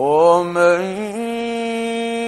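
A male Qur'an reciter chanting in the melodic mujawwad style, entering abruptly on a rising, ornamented phrase and then holding one long steady note from about a second in.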